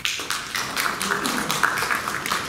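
Audience applauding: many hands clapping in a dense, irregular patter.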